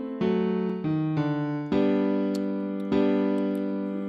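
FL Keys piano plugin playing a slow chord progression: about five chords, each struck and left to ring and fade before the next.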